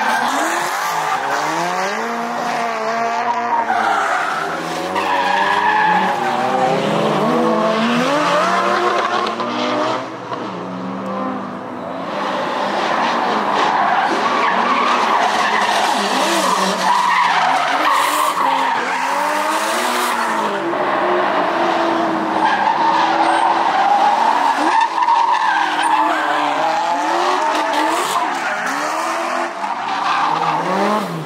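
Drift cars sliding one after another through a tight road corner. Their engines rev up and down as the drivers work the throttle, and the tyres skid and squeal through each slide. The sound dips briefly about a third of the way through, between cars.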